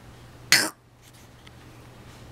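A single short cough about half a second in, over a faint steady hum.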